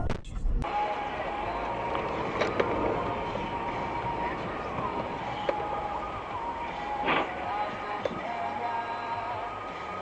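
Steady street traffic noise beside a van, with a thin, slowly wandering tune over it and a few brief clicks.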